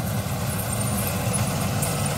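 Tractor diesel engine running steadily with a low, pulsing rumble, heard up close from the driver's seat.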